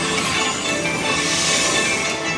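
Dragon Link Golden Century slot machine playing its free-games bonus music as the reels spin.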